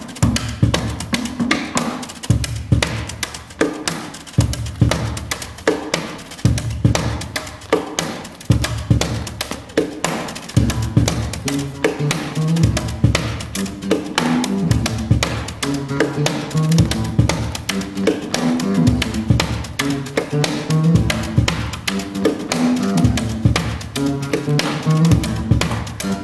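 Tap dancing: two dancers' shoes striking a stage floor in quick, dense rhythmic patterns, over live band music with low sustained bass notes and guitar.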